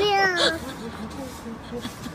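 A kitten meows once, a drawn-out call that falls in pitch at the end, followed by fainter short vocal sounds.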